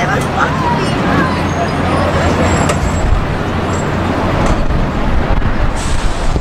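Distant shouts and calls from players and spectators on an outdoor sports field over a steady low rumble. A few faint clicks.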